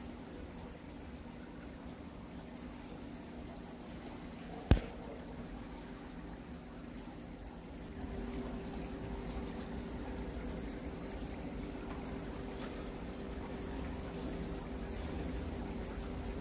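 Steady ambience of an indoor fishing pond: a low hum with water trickling, and a second steady hum joining about halfway through. A single sharp click stands out about five seconds in.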